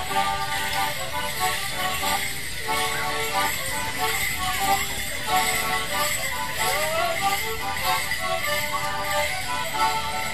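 Live English folk dance tune played on melodeon and concertina for Morris dancing, in steady repeating phrases, with the dancers' leg bells jingling along.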